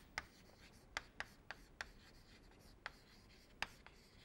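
Chalk writing on a chalkboard: short, sharp taps and scratches of the chalk stick as letters are formed, about seven irregularly spaced ticks, faint overall.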